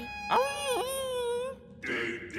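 A cartoon ladybird with a dog-like voice whimpering in one long, slightly wavering whine: a hungry, pleading cry.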